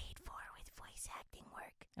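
A man whispering close to the microphone: breathy, unvoiced speech, much quieter than his normal talking.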